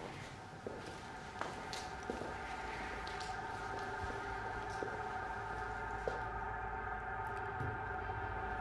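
A steady drone of several held tones that slowly grows a little louder, with a few faint soft knocks scattered through it.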